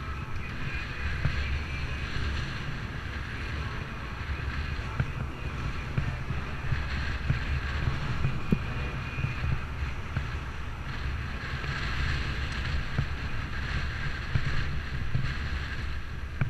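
Wind rushing over the microphone of a moving bicycle, mixed with the steady noise of road traffic and tyres on the street, with small irregular knocks.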